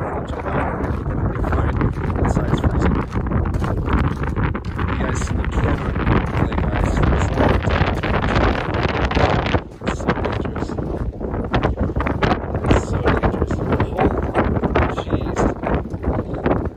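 Wind buffeting the phone's microphone, with footsteps crunching on the gravel shore and a brief lull about ten seconds in.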